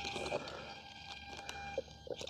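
Faint handling noise from a foam RC jet being lifted and balanced on the fingertips: scattered light clicks and knocks, with a faint thin steady tone underneath.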